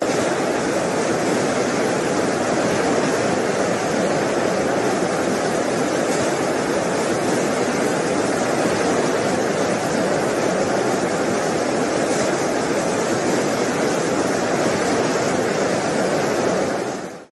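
A steady, unbroken rushing noise of surf and storm wind, even throughout with no distinct gusts, crashes or other events.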